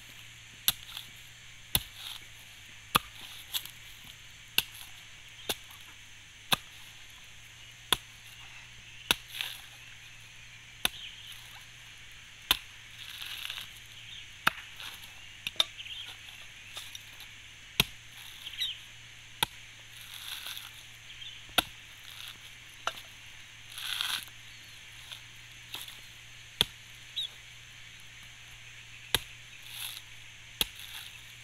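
Large knife chopping into the tough fibrous husk of a mature coconut on a wooden stump. Sharp strikes come about once a second, with a few longer rasps as the husk is pried and torn away.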